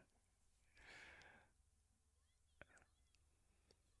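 Near silence: room tone, with a faint short breath about a second in and a tiny click a little later.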